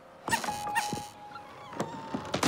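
A squeaky, dog-like whine held at one pitch for about a second, after two light knocks near the start: a cartoon sound effect for the swinging wooden box.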